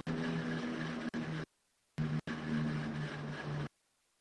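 A steady low hum with a few pitched tones, coming through an online call's audio in two stretches of about a second and a half each. Each stretch starts and stops abruptly, with dead silence between.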